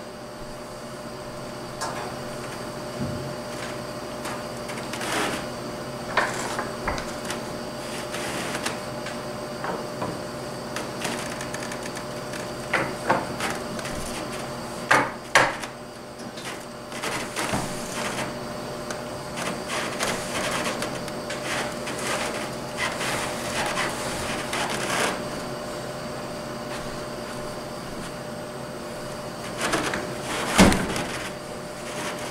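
Knocks, bumps and rattles of a Frigidaire 25,000 BTU wall air conditioner's metal chassis being tipped and lifted onto a wooden rolling dolly, with the loudest pair of knocks about halfway through and a run of smaller clatters after it, over a faint steady hum.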